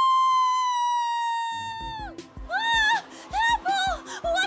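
A cartoon character's long crying wail: one held note that sags slightly and breaks off about two seconds in. Then bouncy background music with a steady beat starts.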